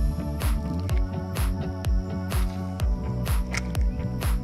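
Background music with a steady drum beat, a little over two beats a second.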